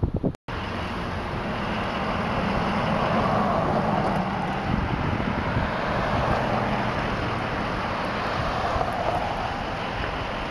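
Road traffic on a street: steady engine and tyre noise of vehicles driving by, swelling and easing, after a brief break in the sound about half a second in.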